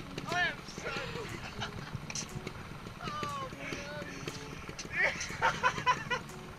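A man laughing hard in repeated high, wavering bursts, loudest at the start and again about five seconds in, over a steady low rumble of wind on the microphone.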